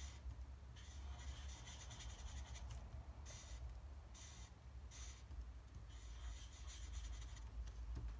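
Black marker pen rubbing on paper in short repeated strokes, colouring a drawn foot in solid, over a steady low hum.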